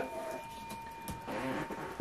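Quiet room noise with a faint steady high tone, and a brief soft murmur a little past halfway.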